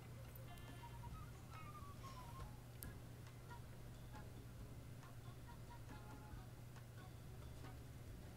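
Near silence: a low steady hum with faint background music.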